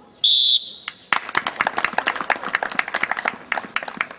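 A referee's whistle sounds one short, loud blast, and about a second later a small group of people begins clapping.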